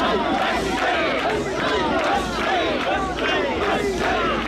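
Dense crowd of mikoshi (portable shrine) bearers shouting together as they carry the shrine, many voices overlapping in a continuous din.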